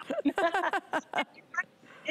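A woman laughing, a quick run of laughs with a spoken word through the first second or so, then it quiets.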